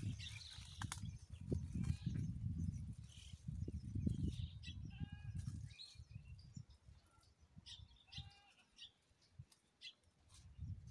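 Several short animal calls, a couple of them clear pitched calls about five and eight seconds in, among scattered chirps, over an irregular low rumble of wind on the microphone that dies down about six seconds in.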